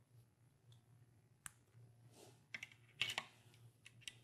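A few faint, sharp clicks and taps as a sample cuvette is handled and set into a benchtop turbidity sensor, the loudest cluster about three seconds in, over a faint low hum.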